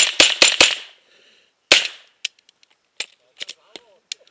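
Rifle fired five times: a rapid string of four shots within well under a second, then a single shot about a second later. A few fainter clicks follow.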